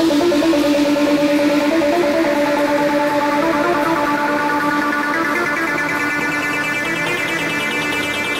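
Techno breakdown with no beat: a sustained synthesizer note holds and wavers slightly in pitch, growing steadily brighter as higher overtones come in.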